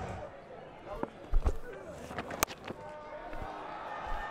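Cricket ball struck by the bat: a sharp knock with a low thud a little over a second in, followed by a few fainter clicks over a low crowd murmur.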